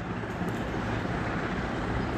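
Steady background noise with a low hum underneath, even throughout, with no distinct events.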